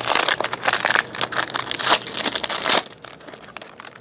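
A foil trading card pack wrapper crinkling and crackling as it is handled and opened by hand. The rapid crackling lasts nearly three seconds, then dies down.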